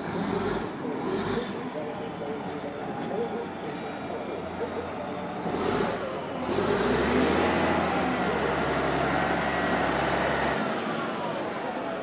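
Caterpillar 980G wheel loader's diesel engine running, revving up about six and a half seconds in and holding high revs for about four seconds with a faint high whine, then dropping back near the end.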